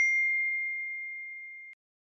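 A single bell 'ding' sound effect for a notification-bell click: one clear ringing tone that fades steadily over about a second and a half, then cuts off suddenly.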